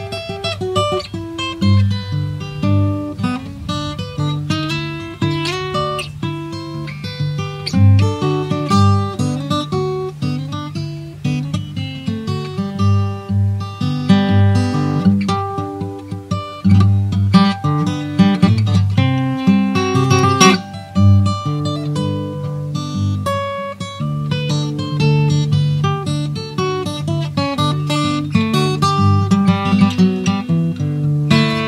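Hawaiian slack-key guitar played solo on a steel-string acoustic guitar, fingerpicked: a melody line over a steady, repeating bass pattern.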